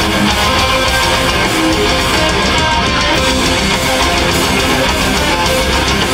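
A heavy metal band playing live, with distorted electric guitars, bass guitar and drums, loud and continuous.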